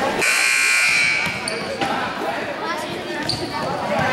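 Gymnasium scoreboard horn sounding once for about a second, a steady buzzing tone, during a stoppage in a youth basketball game; voices and gym noise follow.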